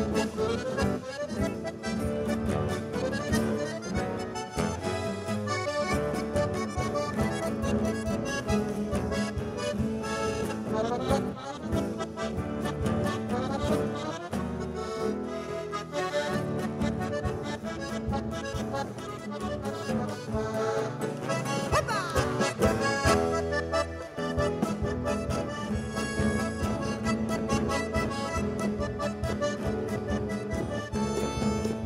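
Live instrumental chamamé played by a trio: accordion leading the melody over guitarrón and drum-kit percussion with cymbals, in a steady rhythm.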